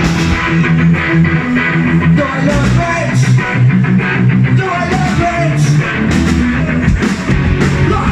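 Punk rock band playing live and loud: electric guitar and drums, with a singer at the microphone.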